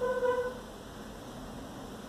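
A steady held tone with overtones that cuts off about half a second in, followed by a faint, even hiss.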